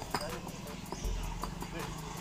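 Concrete paving blocks clacking against one another as they are lifted from a stack and set into place, a few sharp knocks.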